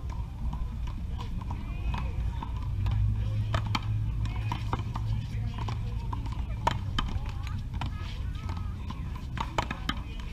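Paddleball rally: sharp smacks of the rubber ball off paddles and the wall, a few hits in clusters, over a steady low rumble.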